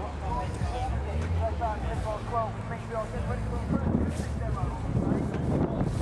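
Outdoor ambience of faint, indistinct voices over a low steady hum that fades about a second in. Wind buffets the microphone in the second half.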